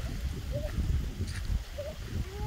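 Wind buffeting the phone's microphone in a low, uneven rumble, with a few short, faint rising calls near the start, about half a second in and near the end.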